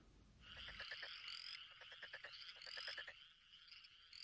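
Faint chorus of frogs: rapid trains of croaking pulses with short rising chirps, starting about half a second in.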